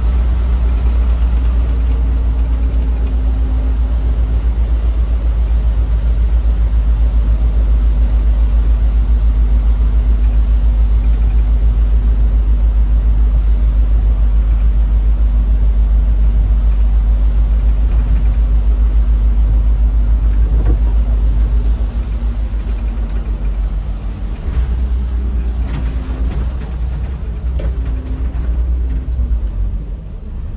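Interior of an Autosan Sancity M12LF city bus on the move: a steady low engine drone with road noise. About two-thirds of the way through, the drone drops and turns uneven as the bus slows toward a stop.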